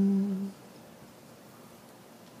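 A man's voice holds a low, steady sung note, which ends about half a second in. A quiet pause follows.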